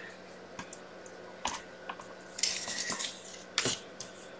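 Sliding-blade paper trimmer cutting a strip off a cardstock panel: a few light plastic clicks, then a brief scrape of the blade through the card about two and a half seconds in, and a sharper click near the end.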